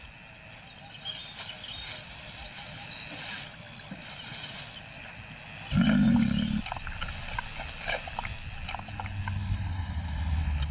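A lion gives one short, low growl about six seconds in, over quiet bush ambience with faint ticking. Near the end a low engine hum starts.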